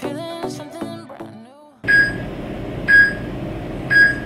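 Background music with a sung-style melody that fades out just under two seconds in. It gives way to a steady hiss and three short high beeps, one a second: a workout timer counting down the last seconds of a rest break.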